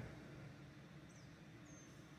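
Near silence with two faint, brief, high-pitched bird chirps about half a second apart, over a low steady hum.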